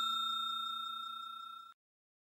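Fading ring of a bell 'ding' sound effect, the notification-bell sound of a subscribe-button animation: a steady ringing tone that dies away and stops abruptly near the end.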